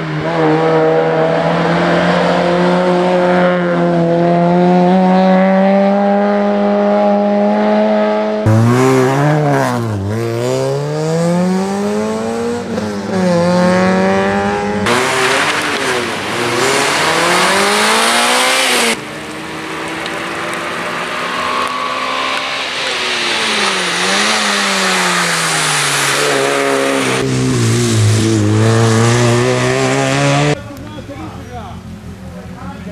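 Peugeot 106 1600 rally car's four-cylinder engine driven hard at high revs, the pitch rising and falling sharply again and again as the car climbs. In the middle it pulls away from standstill with the revs climbing steeply.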